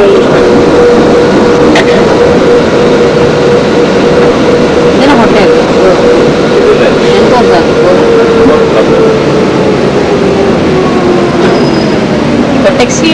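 Sentosa monorail train running, heard from inside the car: a loud steady rumble with a steady motor whine. The whine falls in pitch over the last few seconds as the train slows into a station.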